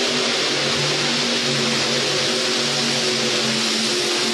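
Modified pulling tractor with several supercharged V8 engines at full throttle under load during a pull: a loud, steady roar.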